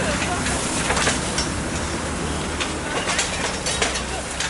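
A house fire burning: a steady low rumble and hiss with scattered sharp cracks and snaps, several of them close together in the second half.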